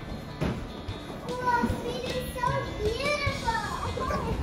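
A young child's high voice, rising and falling in a sing-song way without clear words, starting about a second in.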